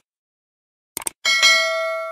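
A quick double mouse-click sound effect about a second in, followed by a bell ding that rings out and slowly fades, the notification-bell sound of a subscribe-button animation.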